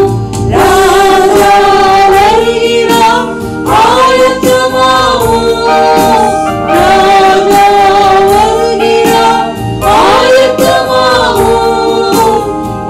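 A woman singing a Christian worship song into a microphone in long phrases of held, wavering notes, over a steady musical backing.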